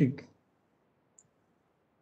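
A man's voice trailing off in the first moment, then near silence on the video-call line, broken only by one faint high click about a second in.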